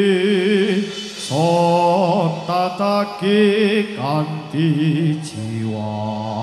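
Live traditional Javanese music for a warok dance: a male voice chants in long, wavering held notes, phrase after phrase with short breaks between them. A couple of sharp percussion hits sound, about a second in and near the end.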